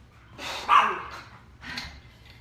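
A dog barking: a loud bark just under a second in and a shorter sound near the end.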